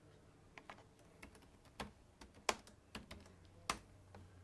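Faint typing on a laptop keyboard: irregular, scattered keystrokes, with two louder clicks about two and a half and three and a half seconds in.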